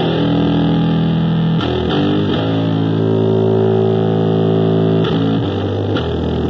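Electric bass guitar played through distortion and effects, ringing out long held notes that change about two seconds in and again near the end.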